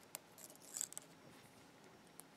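Faint metallic clicks and a brief scratch as a thin steel pick works inside a pin chamber of a small die-cast lock cylinder, drawing out a pin spring.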